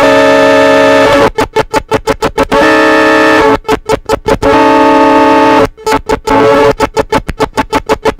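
Circuit-bent Yamaha PSS-9 Portasound keyboard crashing under a starved supply voltage from its voltage-starve pot. Rapid stuttering pulses, about seven a second, break into held buzzing chords three times and then fall back into stutter.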